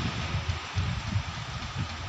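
Wind buffeting the microphone in irregular low gusts, over a steady rushing background noise.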